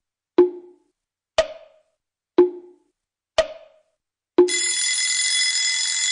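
Clock ticking once a second, alternating a lower tick and a higher tock. At about four and a half seconds a bell starts ringing steadily, like an alarm going off.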